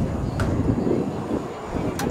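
Outdoor soccer-field ambience during play: a low, steady rumble with faint, distant shouts from players. A single sharp knock comes about half a second in.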